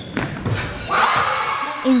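Basketball game sounds in a large gymnasium: a couple of sharp thuds on the hardwood floor early on, then about a second of indistinct voices from players and spectators.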